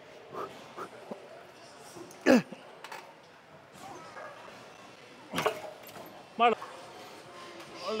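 A man grunting and exhaling hard between lifts, several short bursts, the loudest about two seconds in and a pitched grunt near the end, as he works through reps on a plate-loaded row machine.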